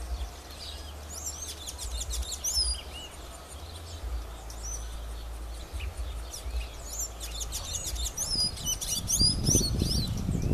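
Small songbirds twittering in quick, high, sweeping chirps, in two bursts of calls: one in the first few seconds and one towards the end. A low rumble on the microphone runs underneath and swells near the end.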